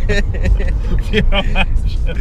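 Steady low engine and road rumble inside a moving car's cabin, with men laughing and talking over it.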